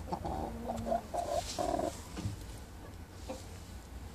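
Rooster clucking: a run of about five short clucks in the first two seconds, then it falls quiet.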